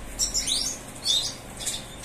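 European goldfinches of the large 'major' race giving short, high twittering chirps, several in quick succession through the two seconds.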